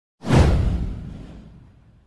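A whoosh sound effect for an animated title graphic. It comes in once, about a fifth of a second in, as one sweep falling in pitch over a deep low rumble, and fades away over about a second and a half.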